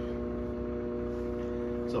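Hamilton Beach microwave oven running on high: a steady electrical hum.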